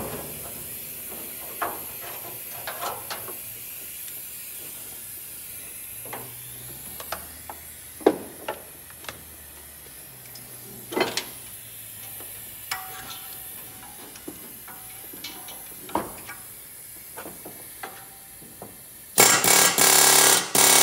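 Scattered metal clinks and knocks as tools are set against the fan clutch. Near the end a pneumatic air hammer starts a loud, rapid rattle, hammering the fan clutch nut to break it loose.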